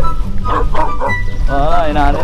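Background music with a steady bass line, with a dog barking over it and a wavering pitched call near the end.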